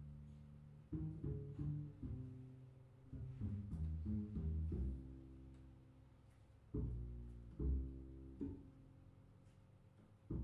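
Double bass played pizzicato in a jazz solo: short runs of plucked low notes, each run followed by a note left to ring and slowly fade.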